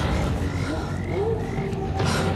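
Frogs croaking in a film's night-time soundtrack, a few short chirping calls.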